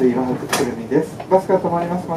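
Speech only: a voice speaking Japanese, with no other sound standing out.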